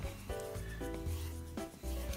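A squeegee rubbing over transfer paper laid on a wooden plaque, pressing it down to push out bubbles and wrinkles. Faint background music with held notes plays under it.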